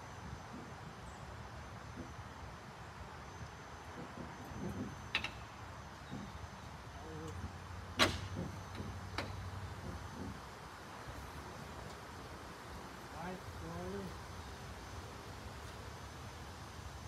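A few sharp clicks and knocks, the loudest about eight seconds in, as a replacement grille on an International LT semi truck is pressed by hand onto its clamps, over a low steady hum.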